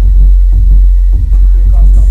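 Dubstep played loud over a club sound system, dominated by a heavy sub-bass throb with the rest of the mix thin above it.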